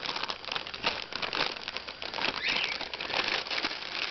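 Empty chip bag crinkling and rustling unevenly as a rainbow lorikeet moves about inside it, with a short high chirp about two and a half seconds in.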